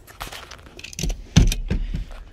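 Clicking, rattling handling noise from a junked car's interior as it is reached into and moved about, with a loud knock about one and a half seconds in and a few lighter knocks after it.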